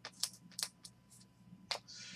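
A few faint, irregular clicks of hard plastic trading-card holders being handled and set down on a table.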